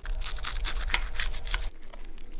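The crisp breadcrumb crust of a fried ham-and-cheese roll crackling and crunching as it is cut into and pulled open, for about a second and a half before stopping abruptly.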